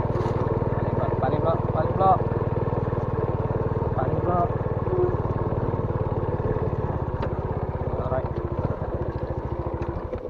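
A small motor scooter's engine runs steadily while riding over a rough grass and dirt track. A few brief higher-pitched chirps sound over it.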